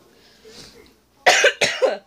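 A woman coughing twice in quick succession, starting just over a second in.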